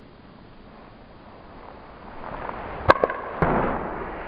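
Golf club swung at a ball on a hitting mat: a rising swish through the downswing, a sharp crack of the club striking the ball about three seconds in, then a second hit about half a second later with a short rush of noise as the ball goes into the practice net.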